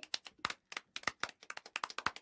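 Scattered handclapping from a few people clapping out of step, sharp irregular claps about ten a second, used as a sound effect on an animated logo.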